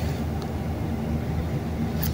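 Elevator cab travelling in its hoistway: a steady low rumble, with a faint click about half a second in.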